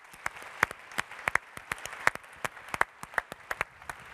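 Audience applauding, with sharp individual claps standing out over a steady patter of clapping.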